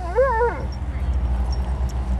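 A husky-type dog giving a short, wavering whine-howl about half a second long at the start, its pitch rising and falling, over a steady low rumble.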